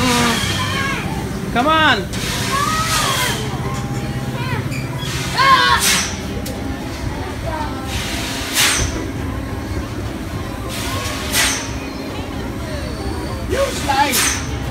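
Children's high-pitched calls and squeals in a busy play area, over a steady low hum, with short noisy bursts every few seconds.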